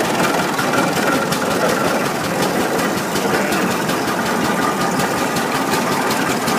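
Engine of a large, early steel-wheeled prairie tractor running steadily as the tractor moves slowly past, with a regular beat of engine strokes.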